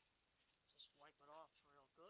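A man's voice saying a few faint, indistinct words in the second half; otherwise near silence.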